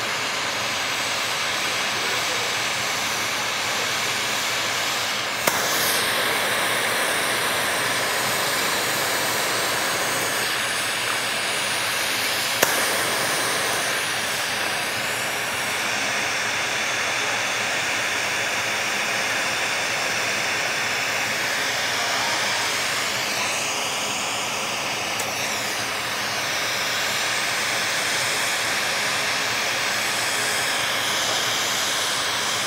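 Glassblower's bench torch flame hissing steadily as borosilicate tubing is turned in it, with two sharp clicks about five and twelve seconds in.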